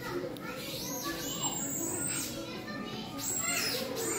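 Children's voices in the background, with two long high-pitched cries, one about a second in and another near the end.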